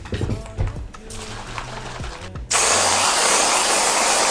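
An aerosol can of whipped cream is shaken with a few low knocks. About halfway through it sprays with a loud, steady hiss lasting about two seconds.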